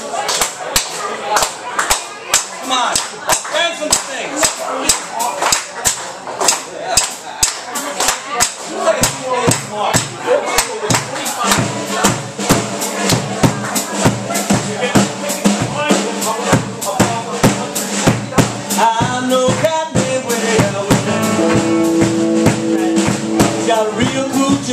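Live rock band's intro: hand claps and drum kit on a steady beat, with bass and electric guitar coming in about halfway and the sound growing fuller near the end.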